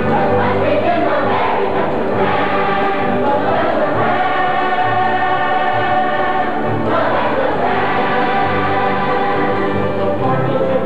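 Large stage chorus of men's and women's voices singing a musical-theatre number in full voice, with long held notes, over musical accompaniment.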